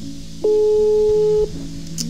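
Soft background music of sustained synth chords, with one much louder steady tone lasting about a second in the middle.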